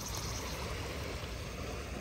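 Small waves washing in over a shallow rocky reef flat: a steady, even wash of water.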